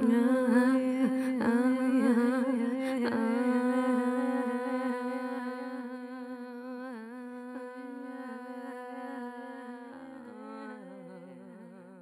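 A person's voice humming, re-attacking the same note a few times before holding it as one long tone with a slight waver that slowly fades out.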